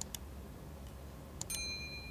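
Faint clicks, then about one and a half seconds in a mouse-click sound followed by a bright bell ding that rings on: the sound effect of an animated subscribe button and notification bell.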